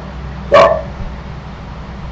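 A single short spoken word from a man over a call, over a steady low hum.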